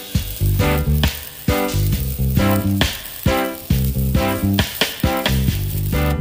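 Sizzle and crackle of an electric welding arc on a steel hinge, under rhythmic background music that is the loudest sound.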